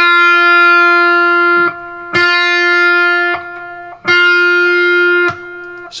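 Electric guitar on a clean tone playing three single picked notes on the B string, all at the same pitch. Each rings about a second and a half before it is cut short. They demonstrate a half-step pre-bend: the fifth-fret note bent up before it is picked, so that it sounds the same as the sixth-fret note.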